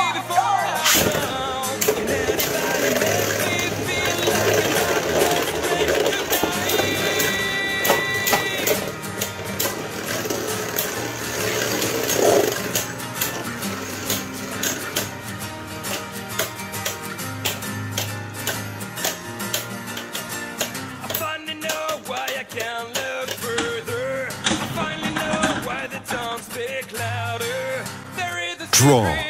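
Background music over Beyblade spinning tops spinning and clacking against each other in a plastic stadium, with many short clicks from their collisions, more frequent in the second half.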